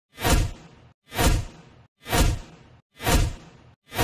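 Whoosh sound effect repeating about once a second, each a sudden deep swoosh that fades within half a second, marking the steps of an on-screen countdown intro. Four in all, with a fifth starting at the very end.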